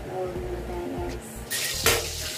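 Background music, then about a second and a half in, a sudden loud hiss as food is dropped into hot oil in a wok on a gas stove, with a sharp pop near the end.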